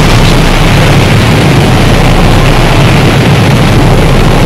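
Harsh noise music: a loud, unbroken wall of distorted noise with a heavy low rumble, its level unchanging, and a thin high whine held above it.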